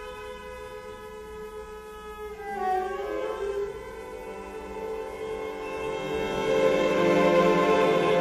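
String orchestra of violins, violas, cellos and double bass playing contemporary music: a steady held high chord, then sliding pitches about two and a half seconds in, then a denser passage that swells louder toward the end.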